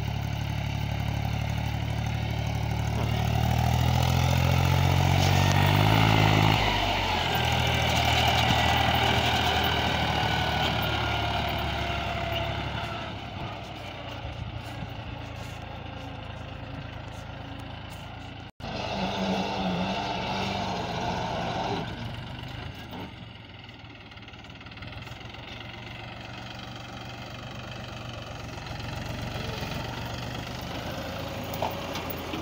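Mahindra 265 DI tractor's three-cylinder diesel engine running under load while it pulls a disc harrow through dry soil. The engine note climbs in pitch about four to six seconds in, then drops back, and the sound is quieter in the second half.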